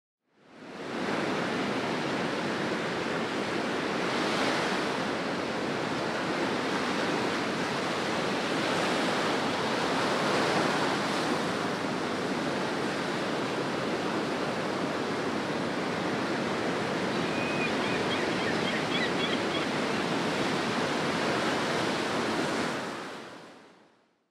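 Ocean surf: a steady wash of breaking waves with gentle swells. It fades in at the start and fades out at the end, with a few faint high chirps about three-quarters of the way through.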